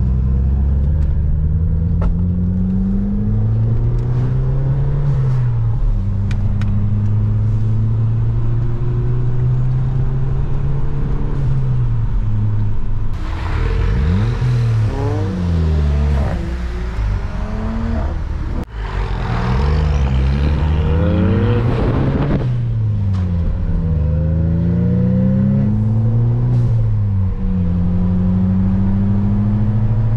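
Car engine heard from inside the cabin, running under load, its pitch climbing and dropping through gear changes. For several seconds in the middle comes louder rushing engine and exhaust noise, with several pitches rising and falling at once, as the group's exhaust-tuned cars accelerate close by.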